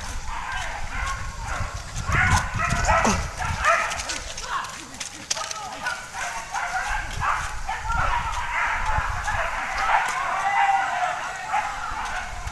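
Hunting dogs barking and yelping, over the thud of running footsteps and brushing through undergrowth close to the microphone.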